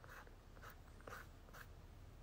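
Near silence with four or five faint, short scratchy rustles.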